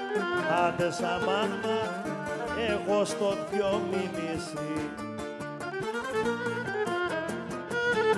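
Live Cretan traditional music: a bowed Cretan lyra plays a gliding melody over steadily strummed laouta and guitar.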